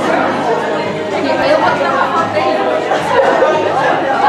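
Indistinct chatter of several overlapping voices in a large indoor room, with no single clear speaker.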